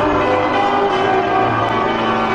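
Intro music sting: a dense wash of ringing, bell-like tones held steady and loud.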